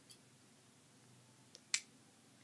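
A few brief clicks of fingers handling a smartphone: a faint tick at the start, then a sharper click near the end.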